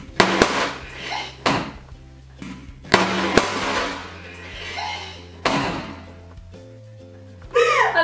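A balloon bursts with a sharp pop just after the start, the sticks of a Boom Boom Balloon game having pierced it, followed by bursts of shrieking and laughter from two girls over background music.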